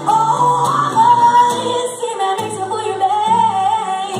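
A woman singing a blues song live over acoustic guitar. She comes in loudly at the start on a long high note that bends and wavers through a vocal run.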